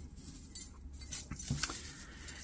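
Silver jewelry being handled: a few faint, light metallic clinks of silver links against each other.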